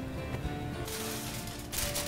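Background music with steady notes. From a little under a second in, a sheet of aluminium foil crinkles as it is handled, louder near the end.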